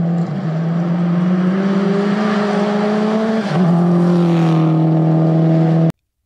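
Subaru Impreza WRX rally car's engine pulling hard on a gravel stage, its note climbing slowly before dropping sharply about three and a half seconds in, as at a gear change, then holding steady. The sound cuts off abruptly just before the end.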